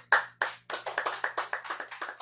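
Hand clapping after the last notes of a jazz guitar piece: a few separate claps at first, quickening into a short spell of applause.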